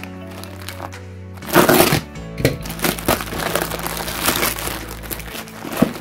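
Bubble-wrap packaging crinkling and crackling as it is handled, loudest in a burst about a second and a half in, over background music with steady sustained tones.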